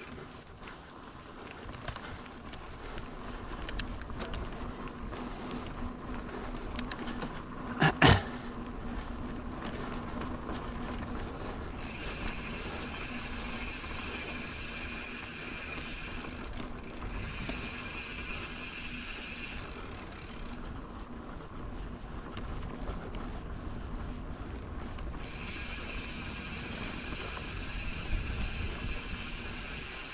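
Mountain bike rolling along a packed-dirt singletrack: steady tyre and drivetrain noise, with a high buzz, like a freewheel hub ticking while coasting, that comes and goes in long stretches. A single sharp knock about eight seconds in is the loudest sound.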